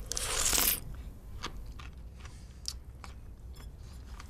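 A person eating or drinking from a bowl held to the mouth: one short, loud, noisy burst at the very start, then faint scattered clicks.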